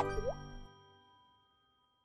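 Logo outro jingle ending: a held chord rings out with a click and a short upward-sliding plop effect near the start, then fades away over about a second and a half.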